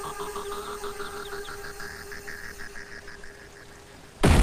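Film soundtrack of a tense lull: a steady held tone with quick repeated chirping blips over a low rumble, fading toward the end.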